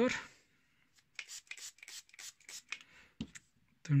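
Water being splashed by hand onto a 4000-grit whetstone: a quick, irregular run of short wet pats, followed by a single low knock a little after three seconds in.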